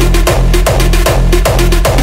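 Hardstyle dance music: a heavy kick drum with a long booming bass tail hits steadily, a little under three beats a second, under electronic synth layers.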